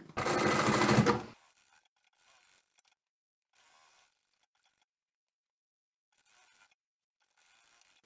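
Electric sewing machine stitching a seam in a quick burst of about a second, then stopping, followed by near silence.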